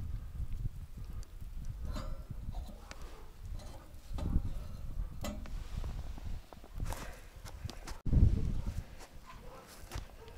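Scattered soft knocks and rustles from slabs of salo being handled and laid on a wire grate over a metal bucket smoker, over a low, uneven rumble, with a louder low surge a little after 8 s.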